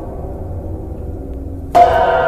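A low hum, then near the end a cymbal is struck once and rings on with a bright metallic, gong-like shimmer.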